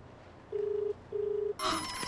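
Telephone ringing: a double ring, two short steady tones in quick succession. A sudden loud sound cuts in near the end.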